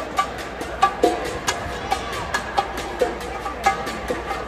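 Live band playing sparse percussion: irregular, sharp wooden-sounding knocks with short pitched ring, a few per second, carried through an arena's sound system.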